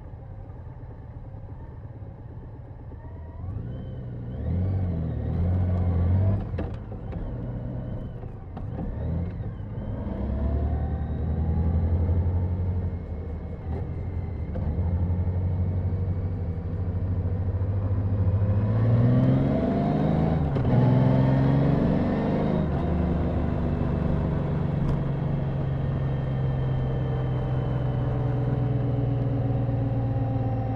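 Honda GL1800 Gold Wing's flat-six engine pulling away from walking pace and accelerating through the gears, its note rising in pitch several times. Wind noise on the helmet microphone grows as speed builds in the second half.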